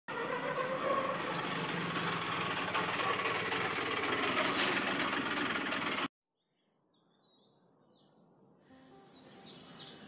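A loud, steady rushing noise that cuts off abruptly about six seconds in. After a moment of silence, a quiet outdoor ambience fades up with birds chirping, and a quick run of chirps near the end.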